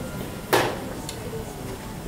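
A single sharp knock about half a second in, dying away quickly over a quiet room background.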